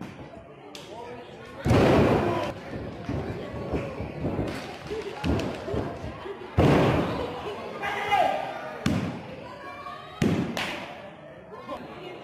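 Wrestlers crashing down onto the wrestling ring's mat: three loud thuds that ring on briefly, about two seconds in, midway, and near the end, with voices around them.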